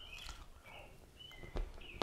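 Faint bird chirps, several short ones, with a soft knock a little past halfway.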